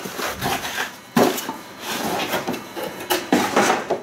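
Cardboard mailer packaging being pulled open and handled: irregular scraping and rustling of cardboard, with sharper rips or knocks about a second in and again near the end.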